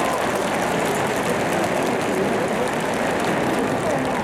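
Baseball stadium crowd noise: a steady din of many voices in a domed ballpark.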